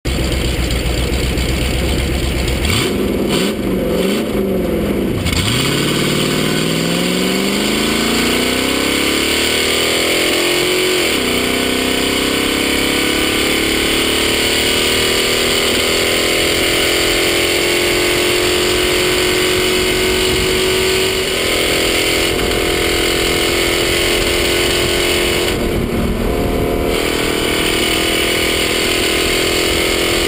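Rock racer's engine at full throttle, heard from inside the car. Its pitch rises and falls a few times near the start, then climbs steadily for several seconds, drops sharply about eleven seconds in and climbs again, then holds a high, fairly steady pitch.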